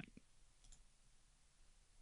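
Near silence with two faint mouse clicks in the first second.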